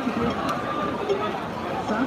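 People talking in the street, several voices overlapping, with a brief click about half a second in.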